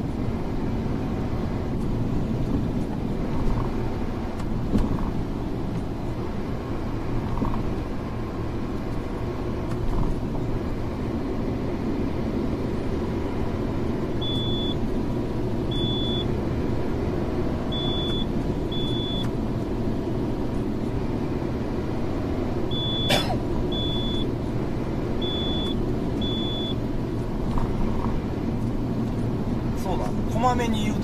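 Steady low road and engine rumble inside a loaded truck's cab at expressway speed. Around the middle, short high electronic beeps sound several times, mostly in pairs, with a sharp click among them.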